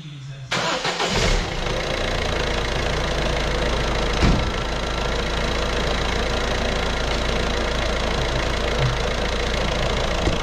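Citroen Berlingo's DV6 diesel engine cranked by the starter and catching within about a second, then idling steadily: the first start after a new timing belt and water pump, with one short thump about four seconds in.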